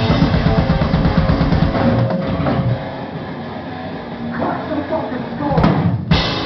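Death metal band playing live, with fast, dense drumming on a full drum kit and guitar. A little under halfway the drums drop out, leaving a quieter stretch of guitar, and a loud hit comes near the end as the band comes back in.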